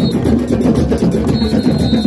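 A drum circle of many hand drums, djembes among them, playing a fast, dense rhythm together. A thin high tone sounds over the drumming near the end.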